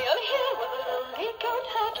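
A yodeling goat plush toy playing its song: a yodeling voice leaping up and down in pitch over a music backing.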